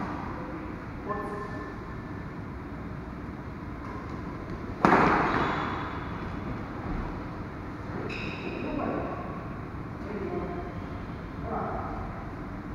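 Badminton rally in a large hall: one hard, sharp racket hit on the shuttlecock about five seconds in, much louder than anything else and echoing off the hall, among quieter play sounds and players' voices.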